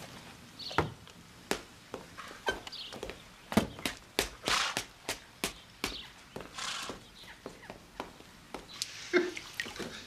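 Hooves of a standing carriage horse and footsteps knocking on stone paving: sharp, irregular knocks about two a second, with a couple of longer hissing sounds around the middle.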